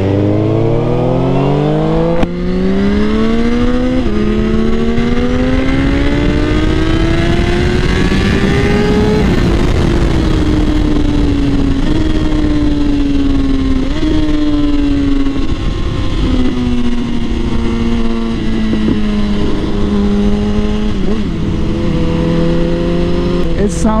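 Suzuki GSX-R1000 inline-four sportbike accelerating hard, its engine note climbing through the gears, with quick upshifts at about two and four seconds and a long pull to about nine seconds. Then the throttle rolls off and the note falls slowly, jumping up briefly twice as the bike slows, over loud wind rush.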